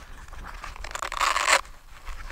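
A short rasping scrape lasting about half a second, a little past the middle, with faint handling clicks before it, as the flight battery is pushed forward in the foam RC jet's battery bay.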